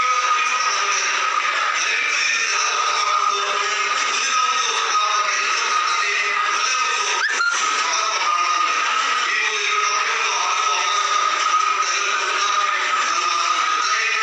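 A man singing into a microphone through a loudspeaker system, over a steady high-pitched tone, with a brief knock about halfway through.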